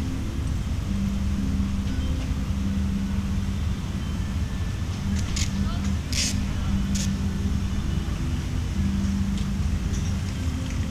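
Open-air ambience dominated by a low rumble, with faint slowly changing bass notes, each held about a second, from a laser-show soundtrack on loudspeakers. A few brief hissy bursts come between about five and seven seconds in.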